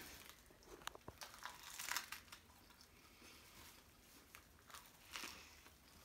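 Faint crinkling of plastic wrap being peeled back from a hand-held, seaweed-wrapped sushi roll, in a few short bursts, with soft biting and chewing.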